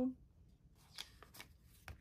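Paper pages of a thick collaged Hobonichi Cousin journal being turned by hand: a few light rustles and taps, about a second in and again near the end.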